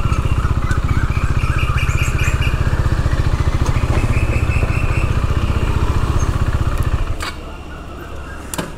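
KTM 390's single-cylinder engine running steadily at low revs as the motorcycle rolls slowly to a stop, then cutting out suddenly about seven seconds in, followed by a sharp click.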